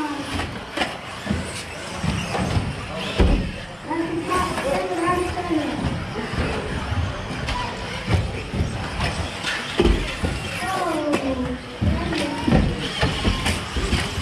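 Electric 1/10-scale RC buggies racing on an indoor track, with voices talking over it. There are several sharp knocks from cars landing jumps or striking the track, the loudest about three seconds in and others near ten and twelve seconds.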